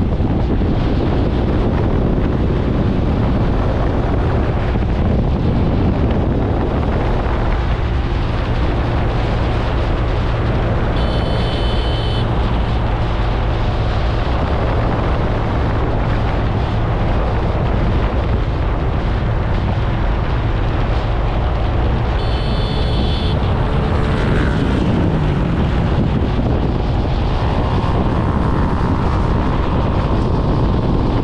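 Motorcycle engine running steadily at cruising speed, with wind buffeting the microphone. Two brief high-pitched tones sound, about eleven and twenty-two seconds in.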